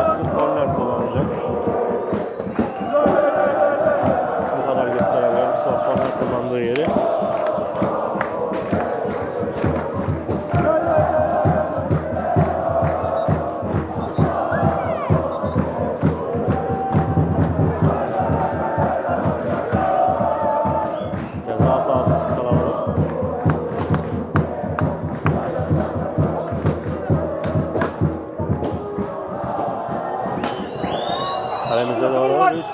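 Football supporters in the stands chanting together in repeated sung phrases, over a steady rhythm of sharp hits.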